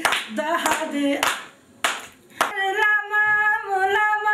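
A woman singing a Zazaki folk song and clapping her hands in time. The singing and claps break off about a second and a half in, two lone claps follow, and then she holds a long, slightly wavering sung note.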